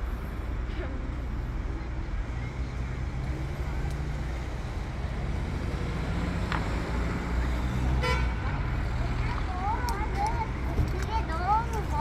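Street traffic at a crossing: car engines running with a steady low rumble, a brief fast rattle about eight seconds in, and high, wavering voices near the end.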